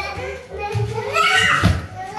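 A young child's high voice singing and calling out during play, over background music.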